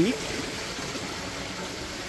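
Steady running water from a koi pond's waterfall filter, a continuous even rush.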